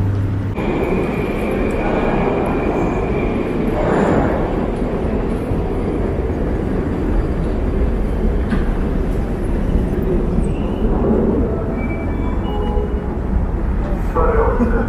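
Metro station noise: a steady rumble of running rail and escalator machinery, with a thin high whine for about two seconds near the start.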